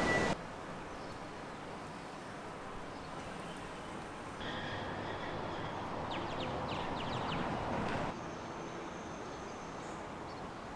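Steady outdoor ambient noise of distant traffic, a little louder from about four to eight seconds in, with faint short chirps in that stretch.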